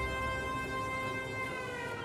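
Cartoon freight carousel whirring as it turns: a steady electric whine whose pitch slides down near the end.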